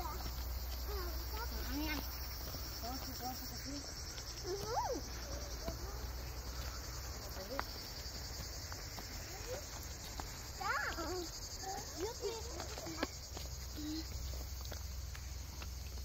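A steady chorus of cicadas buzzing on one high, even pulsing note, with faint voices and a few clicks of steps on a stone path over it.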